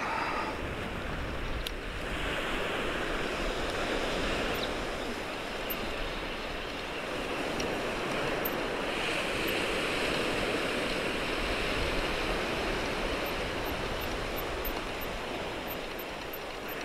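Small surf breaking and washing up a sandy beach, a steady wash that swells louder twice as waves come in.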